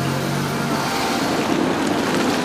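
A car driving past close by on a broken, gravelly road surface: a low engine hum fades in the first second, and tyre noise grows in the second half.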